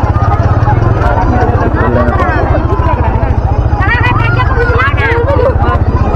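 Motorcycle engine running at low speed, a steady low pulsing rumble, with several people's voices talking over it.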